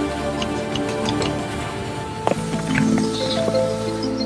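Cinematic background music of sustained chords, with faint ticking and a sharp hit a little past halfway where the chords change.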